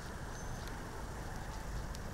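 Armoured military jeep's engine idling, a steady low rumble under open-street noise.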